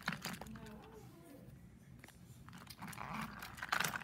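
Scattered light clicks and knocks of plastic toy train pieces being handled as Trackmaster coaches are coupled to the engine on plastic track, with a denser scraping, rattling patch near the end.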